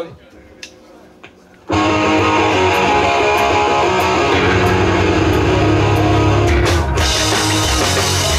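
Live pop-punk band of electric guitar, bass guitar and drum kit starting a song: after a short lull the whole band comes in loud and together about two seconds in and plays on at full volume, with a few sharp drum hits near the end.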